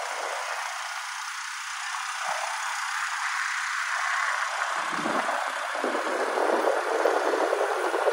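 Steady rushing noise of wind and traffic heard from a vehicle moving along a road, thin with almost no bass, growing a little louder toward the end.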